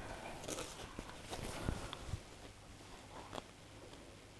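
Faint rustling of quilted fabric being pulled out from under a sewing machine's foot, with a few light clicks.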